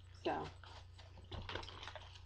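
A few faint light clicks and taps of small objects being handled, over a steady low electrical hum.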